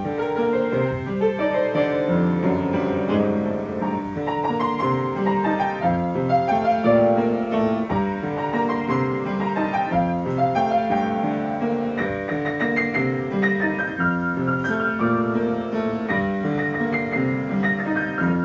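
A piano being played: a melody over sustained chords, running on without a break.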